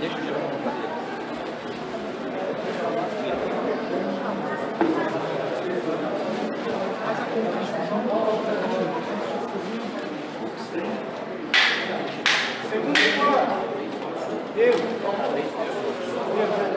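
Many voices talking and calling over one another in a large, echoing hall: cornermen and crowd at a cage fight. About twelve seconds in, three short, sharp, loud bursts cut through the chatter.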